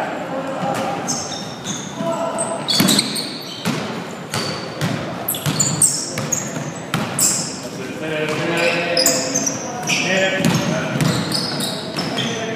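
Basketball bouncing on a hardwood gym floor during play, with short high squeaks of sneakers and players' voices calling out.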